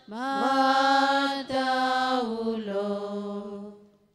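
A single voice chanting a slow sung prayer response in long held notes, with a short break about a second and a half in, the pitch stepping down in the second half and fading out near the end.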